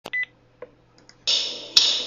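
A click and a short electronic beep, then the opening of a worship song played back from the computer: bright, fading strokes about twice a second, starting just past halfway, over a low steady hum.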